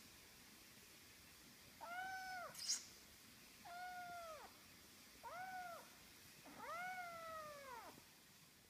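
A young kitten meowing four times, each meow a high call that rises and then falls in pitch, the last one the longest. A brief sharp click comes just after the first meow.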